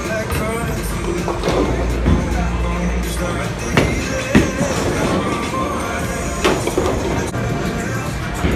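Bowling alley noise: background music and chatter over the low rumble of bowling balls rolling down the lanes. A few sharp knocks from balls and pins come through, the loudest about four seconds in.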